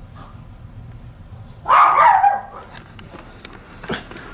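A dog barks once, a little under two seconds in.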